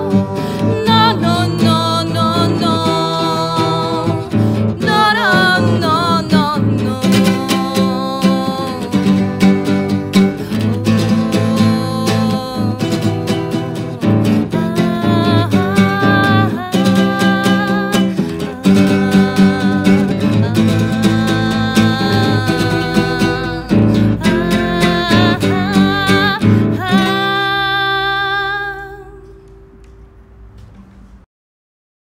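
A woman singing a melody over a strummed acoustic guitar. Near the end the song finishes, a last note ringing on and fading away.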